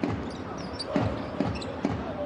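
Basketball being dribbled on a hardwood court, a bounce about every half second, over the hum of the arena crowd.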